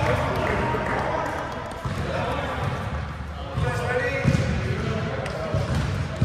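Volleyball rally in a large gym: a few sharp slaps of hands and forearms striking the ball, with players' voices calling and chatting throughout.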